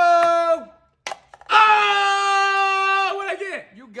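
Men's long drawn-out "ohhh" cries of suspense as a thrown ping pong ball bounces. One cry falls away in the first half second; a second is held on one pitch for about a second and a half, then trails off in falling slides. Two sharp ticks of the ball hitting the cups or table come shortly after the start and about a second in.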